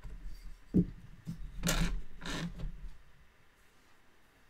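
Handwork at a tapestry loom with a wooden-handled tapestry beater: a sharp knock about a second in, then two short rasping scrapes, over a low rumble that stops about three seconds in.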